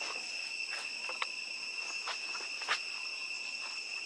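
Steady high-pitched insect chorus, a continuous drone held at two pitches. A couple of faint sharp taps break through it, the louder one about two-thirds of the way in.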